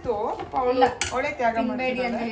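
Voices talking, with a metal utensil clinking against a pan or dish about a second in.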